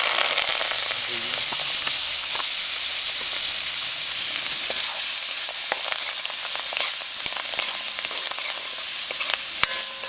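Chopped onion, garlic, scallion and hot pepper frying in hot oil with curry powder and masala: a steady sizzling hiss that starts abruptly as they go into the pan, dotted with small pops and stirring, with a sharp click near the end.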